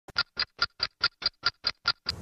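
Intro sound effect: a quick, even run of about nine short identical blips, nearly five a second, with silence between them.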